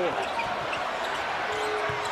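Basketball game sounds in a packed arena: steady crowd noise with on-court sounds of the ball and players' shoes during live play.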